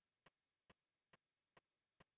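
Near silence broken by faint, evenly spaced clicks, a little over two a second, four in all.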